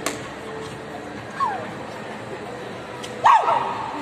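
Two short high yelping cries with falling pitch over a steady background hubbub: a faint one about a second and a half in, and a louder one a little after three seconds.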